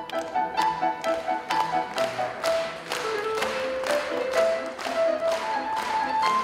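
Yamaha grand piano played live: a steady pulse of struck notes and chords about two a second under a melody in the upper-middle range.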